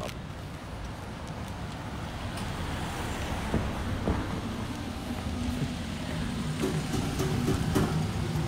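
City street background noise: a steady low rumble of road traffic that grows slightly louder toward the end, with a faint engine hum in the last second or so.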